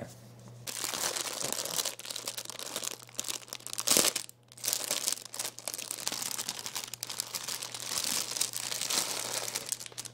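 Clear plastic packaging crinkling and rustling, continuous and crackly, as a new set of doggie diapers is handled and taken out of its bag, with a sharper loud crackle about four seconds in.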